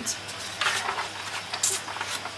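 Soft handling noises: a couple of brief hissy scrapes or rustles over a low background.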